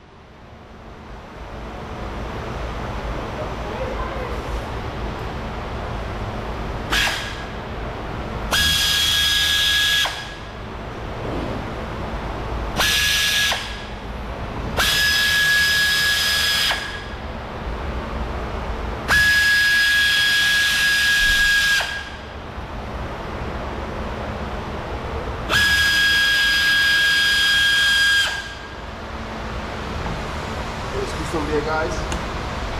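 Pneumatic hand tool running in six bursts of one to three seconds, a steady whine over a hiss of air, as it backs out screws in the rear wheel arch.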